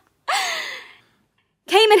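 A person's short breathy sigh, falling in pitch and lasting under a second, followed by a brief silence before speech resumes.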